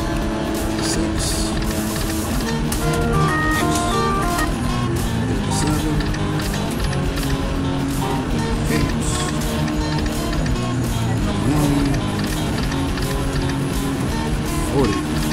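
Electronic music and short jingling tones from a video slot machine as its reels spin, with steady clicks and music running throughout.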